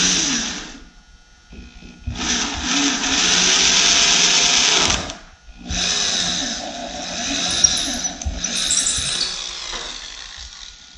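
Electric drill boring holes through a fiberglass pop-top roof, running in spurts: a run that stops about a second in, then two longer runs of about three and four seconds with short pauses between.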